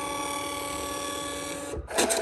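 Aures ODP 333 thermal receipt printer running its self-test print: the paper-feed stepper motor gives a steady whine with several held tones. It stops near the end and is followed by a brief, louder burst.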